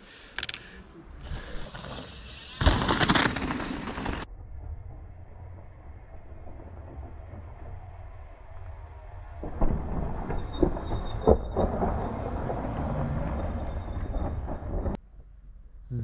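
Mountain bike riding over a rocky gravel trail: a rushing rumble of tyres on loose stone and wind on the microphone, then a few sharp knocks as a bike drops off a rock edge and lands on the gravel.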